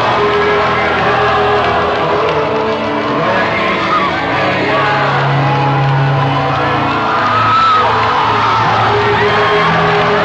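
Live rock concert heard from among the audience in an arena: the band plays and is sung, while crowd voices cheer over it.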